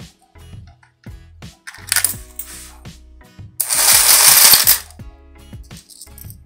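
Coin hopper paying out change: its motor runs and coins clatter out into the tray, in a short burst about two seconds in and a longer, louder one in the middle, with scattered clicks between.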